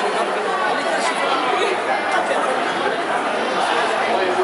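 Indistinct chatter of many spectators talking over one another, at a steady level.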